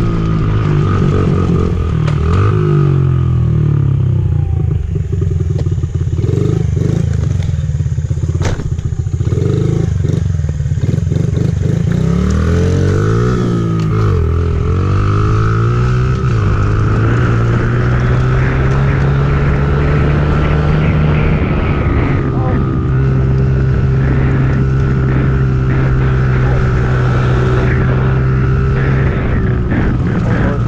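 Small dirt bike engine running as the bike is ridden. Its revs rise and fall repeatedly over the first half, then hold steady.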